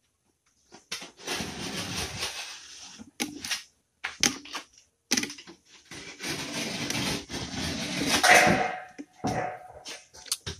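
A strip of gypsum board scraping and rubbing against the wall and window frame as it is pushed and worked into place by hand: two long stretches of scraping with a few sharp knocks between them.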